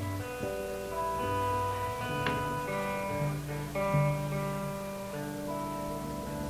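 A lone guitar sounding sustained notes one after another, each ringing for about a second, as it is tuned up and tried out before a song.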